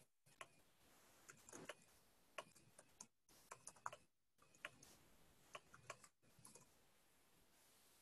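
Faint computer keyboard typing: irregular key clicks that stop about six and a half seconds in.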